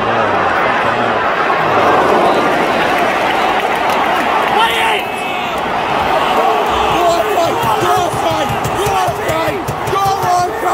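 Football stadium crowd of thousands singing and shouting together, a dense wall of voices, with many separate shouts rising and falling in the second half.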